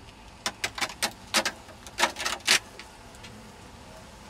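Clicks and clacks as a queen excluder is lifted off the top bars of beehive frames: a quick run of about eight sharp knocks and scrapes in the first two and a half seconds, then only faint background.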